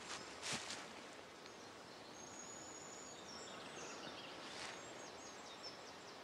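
Quiet woodland ambience: a few soft rustles of leaf litter and undergrowth in the first second, then faint high bird chirps.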